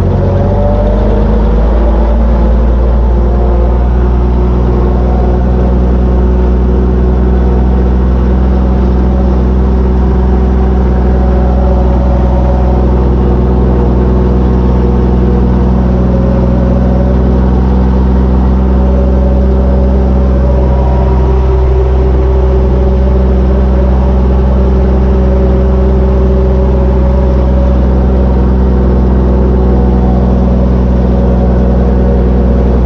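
Old tractor's engine running steadily as the tractor drives along, heard from inside its cab: a constant drone with a slight change in revs in the first couple of seconds.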